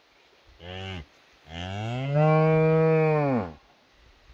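Cow mooing to her newborn calf: a short low call, then a longer, louder one of about two seconds that ends with a drop in pitch.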